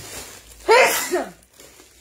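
A woman sneezes once into her hand: one loud burst a little under a second in, tailing off with a falling voiced sound.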